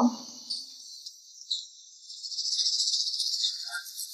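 A high-pitched, finely pulsing hiss like insects chirring, growing louder about halfway through, with a few faint soft sounds under it.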